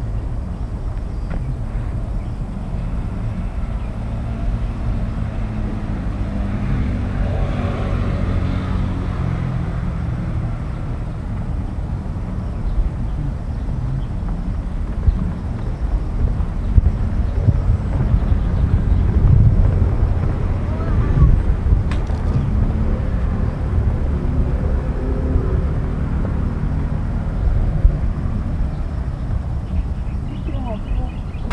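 Outdoor ambience: a steady low rumble, with faint, indistinct voices at times.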